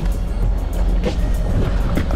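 Boat engine running at idle, a steady low rumble, with music playing over it.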